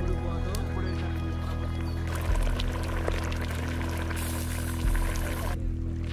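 Background music with steady held tones throughout. From about two seconds in, the hiss and crackle of mutton curry bubbling in the pot joins it, then cuts off suddenly shortly before the end.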